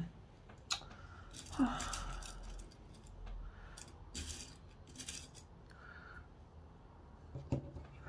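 Faint, scattered metallic clicks of dressmaking pins being picked out of a small metal pin tin, with soft rustles of fabric being handled and pinned.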